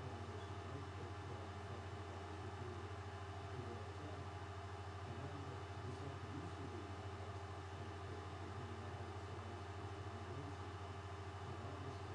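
A steady low hum with an even hiss over it, unchanging.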